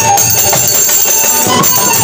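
Live Bengali folk music with a steady beat and jingling hand percussion.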